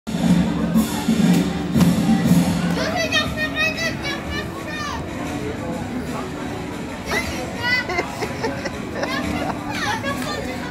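Children's high voices calling out and chattering over background music, with a low droning sound during the first three seconds.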